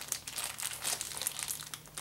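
A folded paper instruction leaflet being unfolded by hand, crinkling in short, irregular rustles.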